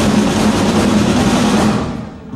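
Live rock band with electric guitars and a drum kit playing loudly, the drums and cymbals to the fore with little clear melody, then dying away near the end into a brief stop.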